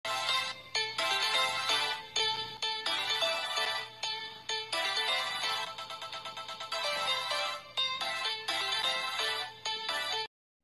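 Upbeat intro music with a bright melody in short, evenly spaced notes and a run of rapid repeated notes in the middle.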